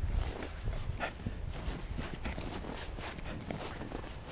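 An Alaskan Malamute playing in fresh snow right at the microphone: irregular crunching and scuffing of snow. There are heavier low bumps near the start.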